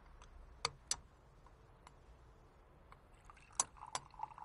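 A few light clinks of tableware at a floor breakfast spread, two close together under a second in and two more near the end, with quiet eating sounds between.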